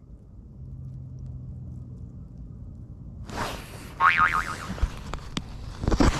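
A cartoon 'boing' sound effect with a wobbling pitch, dubbed in to mark a missed fish, comes in about halfway through after a sudden whoosh of noise. A few sharp clicks follow, and there is a louder hit at the very end.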